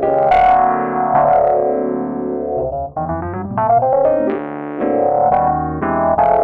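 Solo jazz piano played on a Nord Stage 3 stage keyboard: a full chord struck at the start and left to ring out, a brief gap just before three seconds in, then a string of further chords.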